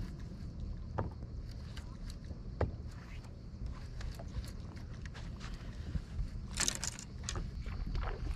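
Low steady rumble of a bass boat on open water, with a few sharp clicks from the angler's tackle. Near the end comes a brief splash-like rush of noise, fitting a bass striking the lure just before the angler reacts to the fish.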